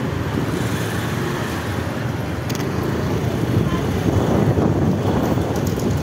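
Street traffic noise: motor vehicles passing close by in a steady rumble.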